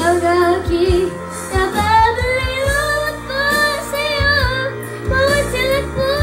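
A young girl singing a Tagalog love song into a handheld microphone over a backing track with a steady bass line and drum beat; her longer notes waver with vibrato.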